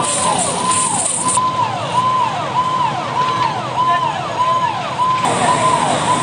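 Fire engine siren sounding a rapid repeating rise-and-fall, a little under two cycles a second, over a steady background of noise.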